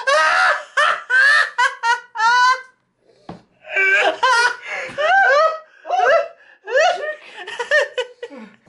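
A man laughing hard in two long fits of rising and falling bursts, with a break of about a second near the middle.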